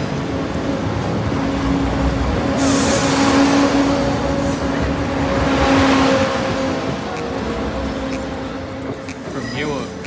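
A Class 170 Turbostar diesel multiple unit passes close by over a level crossing, its underfloor diesel engine running with a steady hum. The sound swells to its loudest a few seconds in and eases off toward the end.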